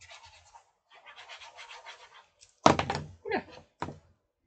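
A glue stick scrubbed back and forth over a sheet of designer paper, followed in the second half by three sharp thuds on the desk, the first the loudest.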